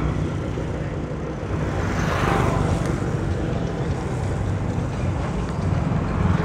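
A motor vehicle's engine running steadily on the move, with wind on the microphone and road noise. The noise swells briefly about two seconds in.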